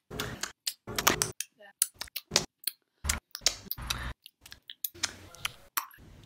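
Rapidly cut fragments of a girl's voice, each only a fraction of a second to about a second long. Abrupt gaps of dead silence fall between the cuts.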